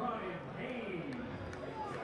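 Ballpark crowd ambience between pitches: a low murmur of spectators' chatter with faint distant voices.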